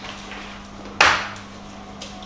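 A single sharp knock about a second in, an egg knocked against a hard surface while eggs are cracked for a frittata, over a faint steady hum.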